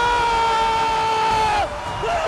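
A football commentator's long held shout on one pitch, dropping off and ending near the end, over a cheering stadium crowd.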